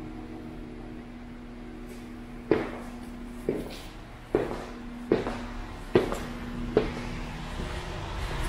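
Footsteps on a hard floor, six steps at an even walking pace starting about two and a half seconds in, over a steady low hum.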